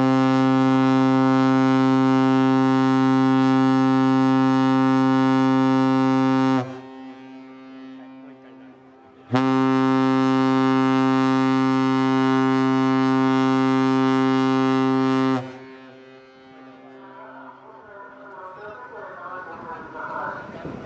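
Ship's whistle of the destroyer JS Yamayuki sounding two long blasts of about six seconds each, a deep steady tone with a pause of under three seconds between them.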